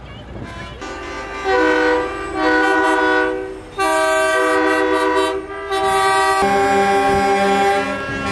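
Semi-truck air horns sounding a multi-note chord, like a train horn, in several long blasts with short breaks between them. A lower-pitched horn takes over near the end.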